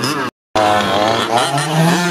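Small petrol two-stroke engine of a King Motor X2 large-scale RC truck, revving up and easing off as it drives. The sound cuts out completely for a moment about a third of a second in.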